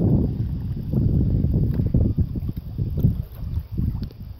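Wind buffeting the microphone on open water from a stand-up paddleboard: a low, gusty rumble that rises and falls, dipping briefly near the end.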